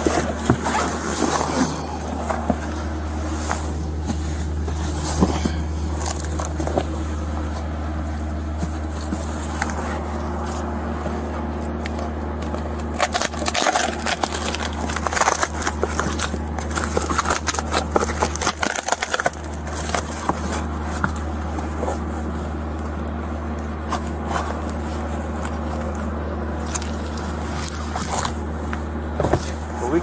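Rustling, scraping and knocking as items are handled and shifted inside a semi-truck cab, over a steady low hum. The handling noise comes in clusters near the start, around the middle and near the end.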